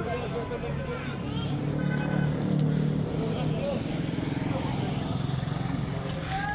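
A motor vehicle engine running with a steady low hum that grows louder about two to three seconds in, then eases off.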